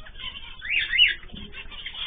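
Pet cage birds chirping, with one louder call of two quick up-and-down sweeps about a second in.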